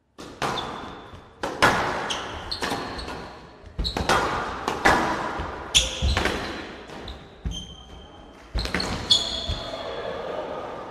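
Squash rally on a glass court: the ball cracking off rackets and walls about once a second, each hit ringing in the large hall, with short high squeaks of shoes on the court floor.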